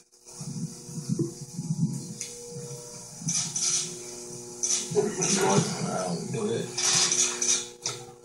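Low, indistinct murmuring between two men close to microphones, with a few short hissing sounds, over a steady hum.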